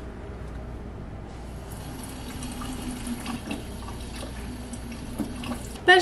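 Kitchen tap running into the sink: a steady rush of water that grows fuller and brighter a little over a second in.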